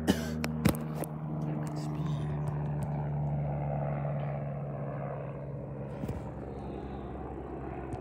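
Helicopter flying overhead: a steady low drone that grows to its loudest in the middle and fades toward the end as it moves away. Two sharp knocks come in the first second.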